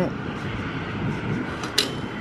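Gasoline pump nozzle delivering fuel into an old car's filler, a steady rushing flow, with one sharp click near the end.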